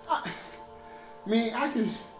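A man talking in two short bursts over steady background music.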